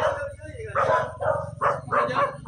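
A dog barking several times in short, sharp barks, close together in the second half.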